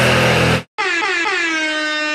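Heavy metal music cuts off abruptly about half a second in. After a short gap, a single long air-horn blast sounds, its pitch dipping slightly at the start and then holding steady.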